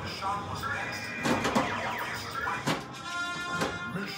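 Stern Meteor pinball machine in play: warbling, gliding electronic game tones in the first half and a steady high electronic tone near the end, with several sharp knocks from the ball striking targets and the coils firing.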